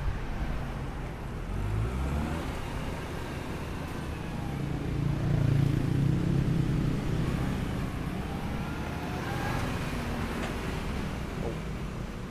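Komatsu 1.5-ton forklift engine running as the truck is driven around, the engine note rising and growing louder around the middle, then easing back.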